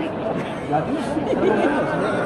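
Several people chatting at once in the background, with a short laugh near the end.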